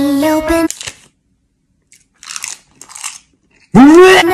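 Two crisp crunches of a person biting into food, about half a second apart, in a gap between stretches of music. A sung soundtrack stops just under a second in, and near the end a voice starts abruptly with a quick rising swoop.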